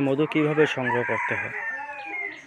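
A rooster crowing once, a call of several joined notes lasting about a second and a half.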